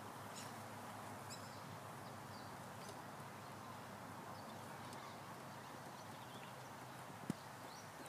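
Faint outdoor background hiss with a few faint, short high chirps scattered through it, like distant birds, and one sharp click a little before the end.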